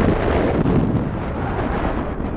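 Wind buffeting the microphone: a steady, loud rush of wind noise with no gunshots in it.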